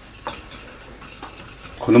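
Wire whisk stirring in a small stainless-steel saucepan, with a few light clinks of the wires against the pan. Cold butter is being whisked into the hot milk sauce to emulsify it.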